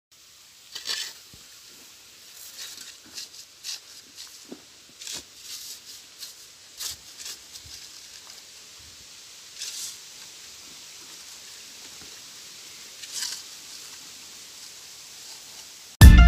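Steel shovels mixing cement by hand, scraping and slopping through wet sand, cement and water in a pile on the ground: irregular quiet scrapes and sloshes, with a few louder strokes.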